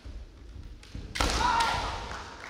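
Kendo fighters' stamping footwork thudding on a wooden floor, then about a second in a sharp strike and a loud kiai shout as they clash.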